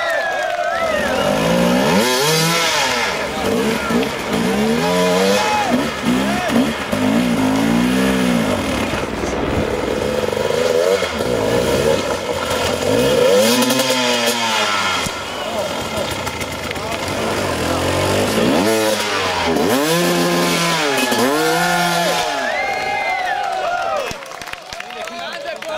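Hard-enduro dirt bike engine revved hard in repeated bursts, its pitch rising and falling each time, while the bike fights for grip on a steep dirt climb.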